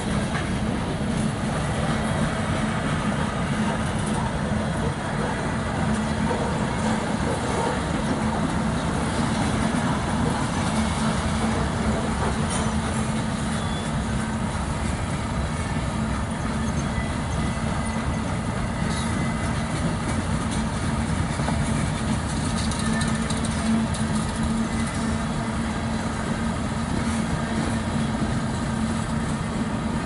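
Freight train cars rolling past at a grade crossing: a steady rumble and clatter of steel wheels on rail, with a constant low hum underneath.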